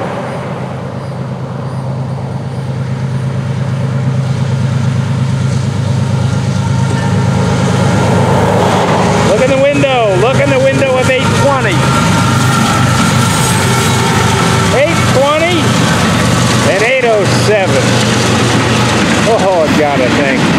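Two GE ES44C4 diesel locomotives passing at speed at the head of an intermodal train. Their engines make a steady low drone that grows louder over the first few seconds as they close in.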